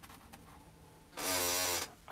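A chair squeaking once near the end: a short buzzy creak lasting under a second.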